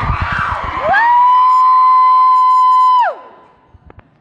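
Crowd cheering, then about a second in a single voice lets out one long, high whoop. It is held steady for about two seconds and drops off.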